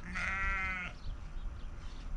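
A sheep bleats once, a single call lasting just under a second.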